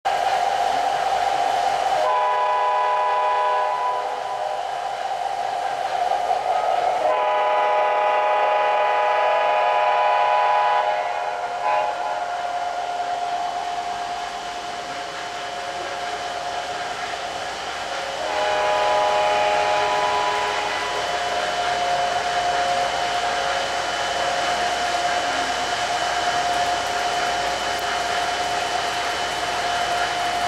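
Sound unit of a model Chesapeake and Ohio diesel locomotive sounding its horn in three long blasts, about two, seven and eighteen seconds in, over a steady whine from the locomotive and the rolling of the passenger cars on the track.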